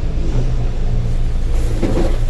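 Steady low rumble of an idling vehicle engine, with a brief rustle of movement near the end.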